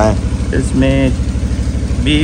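An engine idling steadily with a low, even pulse, under a brief spoken word.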